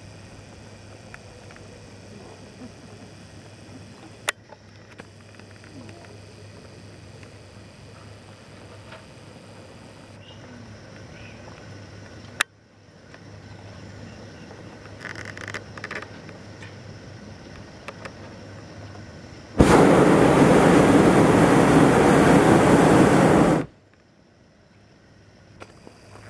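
Hot air balloon's propane burner firing overhead in one loud blast of about four seconds that starts and stops abruptly. Before it there is only a low background, with two sharp clicks.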